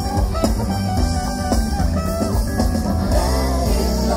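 Live band music through a festival stage's sound system, heard from within the crowd: drums and bass with electric guitar, playing steadily.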